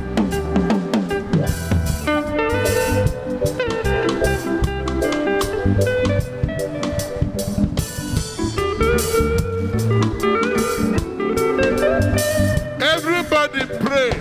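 Live band music: an electric guitar lead over a drum kit and bass, with pitched notes sliding up and down near the end.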